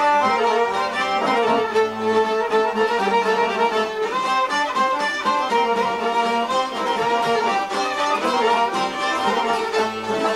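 Albanian folk music played on long-necked plucked lutes, with a dense, continuous run of notes.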